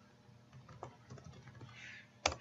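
Faint keystrokes on a computer keyboard: several light clicks in quick succession from about half a second in, typing a word into a search box.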